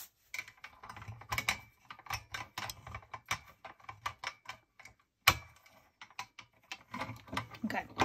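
Hand-cranked stainless steel pasta machine being turned to roll a sheet of polymer clay through on its thinnest setting: a run of quick mechanical clicks, about three or four a second, with one louder clack about five seconds in.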